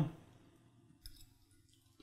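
Quiet room with one faint, short click about a second in, just after the end of a hummed "yum".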